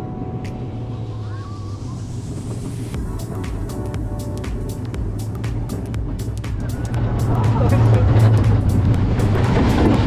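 Steel roller coaster train running along its track, heard from on board: a steady low rumble of the wheels, joined about three seconds in by a rapid clatter that grows louder over the last few seconds.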